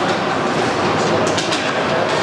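Ice hockey game heard from the stands: a steady din of skates scraping the ice and arena crowd, with a few sharp clacks of sticks a little over a second in.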